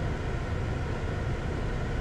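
Steady background hum and hiss with a low rumble underneath, unchanging and with no distinct events.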